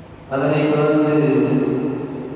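A man chanting a hadith recitation into a microphone: after a short breath-pause, one long melodic held phrase begins about a third of a second in.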